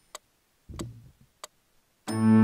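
Faint metronome count-in: three short sharp clicks about two thirds of a second apart, the middle one with a soft low thump, counting in just before the keyboard part starts.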